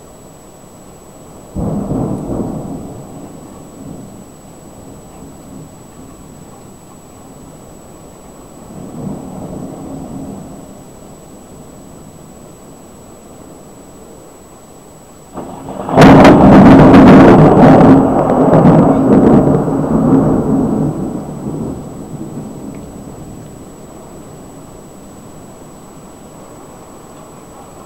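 Thunder from nearby lightning strikes: a sharp clap about a second and a half in that rumbles away over a couple of seconds, a fainter rumble a few seconds later, then a very loud close crack about two-thirds of the way in that rolls on for several seconds before fading.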